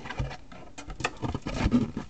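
Small loose plastic model-kit parts clicking and rattling as a hand rummages through them, searching for a finger piece. The sound is a quick, irregular string of light clicks.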